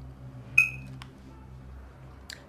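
A short, sharp high tone about half a second in, then a single click, over a low steady hum.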